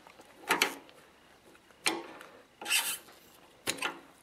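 Flat-blade screwdriver prying a rubber fuel hose off the metal outlet nipple of a motorcycle fuel petcock: four short scraping clicks about a second apart, the third a little longer.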